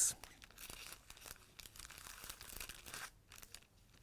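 Thin clear plastic packaging crinkling and crackling faintly as a stack of precut fabric squares is pushed back into it, in small irregular rustles with a brief lull near the end.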